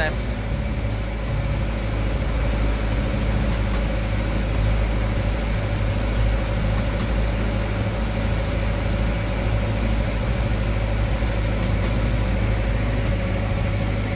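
A small engine running steadily at constant speed: a low hum with a steady mid-pitched drone over it.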